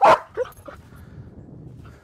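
A Belgian Malinois protection dog gives one loud, sharp bark right at the start, followed by a shorter, fainter yip about half a second later.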